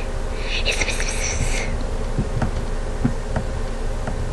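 Steady low background buzz with no speech. A short breathy hiss runs from about half a second to nearly two seconds in, and a few faint ticks follow.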